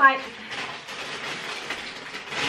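Steady rustling and rattling handling noise, lasting about a second and a half: a packet of cotton pads being rummaged to pull one out.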